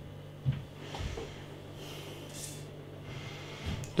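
Quiet room with a low steady hum. There is a soft thump about half a second in, and a person's short nasal breath midway through.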